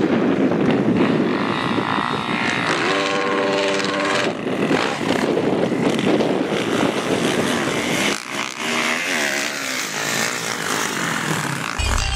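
Dirt bike engines running and revving over sand, one holding a steady high rev for about a second about three seconds in, and the pitch rising and falling again later on.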